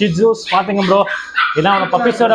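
A Shih Tzu barking, with a man talking over it.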